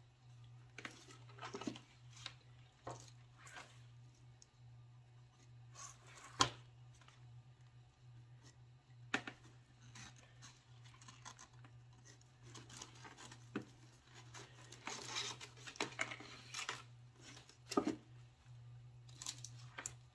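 Faint rustling of ribbon and scattered small taps and clicks as craft pieces are handled and the ribbon is wrapped around a cardboard cylinder, over a steady low hum; a sharper tap comes about six seconds in.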